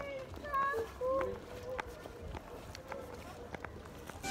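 Faint footsteps on pavement, about two steps a second, from someone walking. Short, distant voices or calls are heard in the first second or so.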